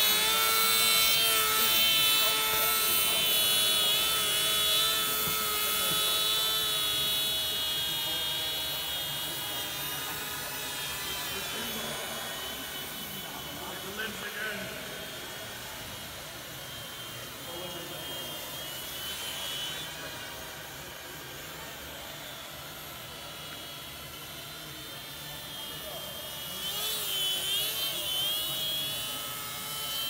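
Electric motor and propeller of a small RC foam aerobatic plane whining steadily while it hangs on its prop close by. The whine fades as it flies away, then grows louder near the end with the pitch wavering as the throttle changes when it returns.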